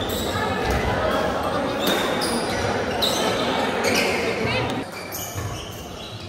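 Badminton rackets hitting the shuttlecock in a doubles rally, sharp hits about a second apart, echoing in a large indoor hall over a murmur of voices.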